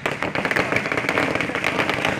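A string of firecrackers going off in a rapid, irregular run of sharp cracks.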